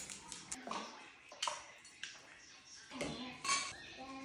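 Faint clinks and rattles of dishes and a wire dishwasher rack being handled: a few short, sharp clicks spread across the quiet, a little louder near the end.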